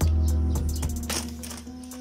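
Background music: sustained notes over a strong bass note that comes in at the start.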